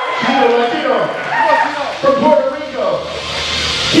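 Loud shouting voices with music playing underneath.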